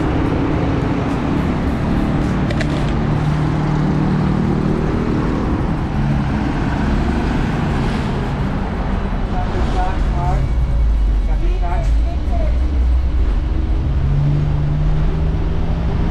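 Busy city road traffic: a steady rush of passing cars and trucks, with the low drone of a heavy engine standing out twice.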